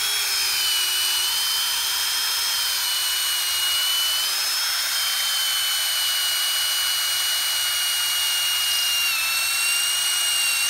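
Battery-powered drill spinning up and running steadily as it bores a hole down through hard-packed soil and layered sedimentary rock, a constant motor whine over the grinding of the bit. The whine dips slightly in pitch about nine seconds in as the drill labours against the rock.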